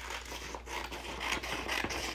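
Scissors cutting through a sheet of paper: a continuous papery rasp with a few small clicks as the blades close.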